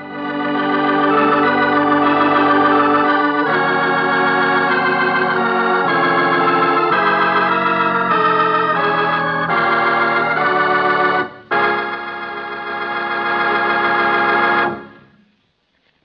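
Organ music: a run of sustained chords that change every second or so, a short break about eleven and a half seconds in, then one long held chord that fades out near the end.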